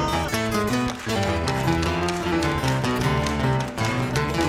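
Instrumental passage of a live Argentine chacarera: acoustic guitars strumming with accordion, over a steady beat of hand claps.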